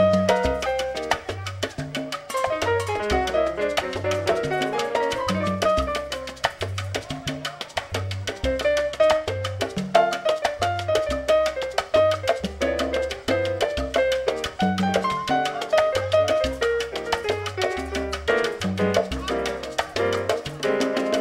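Live salsa music: piano lines up front over upright double bass and percussion, with a steady repeating bass pattern.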